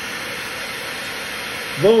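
Hair dryer blowing steadily on a high setting, drawing about 1500 watts.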